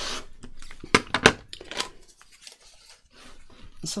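A rotary cutter run along the edge of an acrylic quilting ruler, slicing through card on a cutting mat: a short scraping cut at the start. About a second in come two sharp clacks of hard plastic being knocked or set down, then quieter rustling as the ruler and card are moved.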